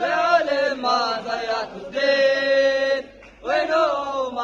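A group of football supporters chanting their Palestine song together in sung phrases. A long held note comes about two seconds in, and there is a brief pause just after three seconds.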